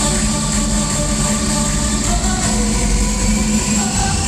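Live pop band music played loud through an arena PA and picked up by a phone in the crowd: an instrumental passage built on a held low note under dense backing. The low note drops away just before the end.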